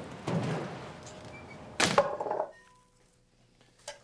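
A rushing noise, then a single sharp thunk about two seconds in with a short ring after it, then near quiet.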